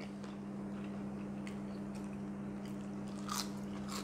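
Faint chewing and biting of crispy pork knuckle and side dishes at the table, with a few small crunches, one slightly louder about three seconds in. A steady low hum runs underneath.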